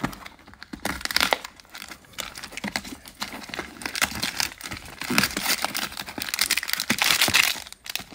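Crinkling and rustling of a SpaceBar disposable vape's packaging being handled and opened by hand, with many small irregular clicks and scrapes.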